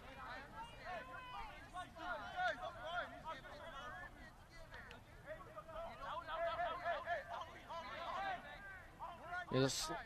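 Faint voices of soccer players calling to one another across the field, picked up by a pitchside microphone, overlapping and drawn out like shouts; a defender calls "on me, on me".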